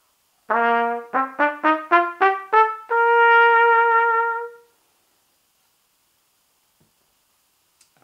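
Trumpet played with a standard metal Bach 1½C mouthpiece, running up a one-octave C scale. A low first note is followed by quick notes stepping upward, and the top note is held for nearly two seconds.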